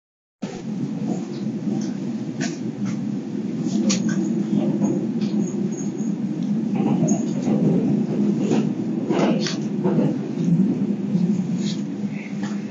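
Running noise inside the cabin of a Kintetsu Urban Liner limited express train moving at speed: a steady low rumble with scattered clicks and knocks.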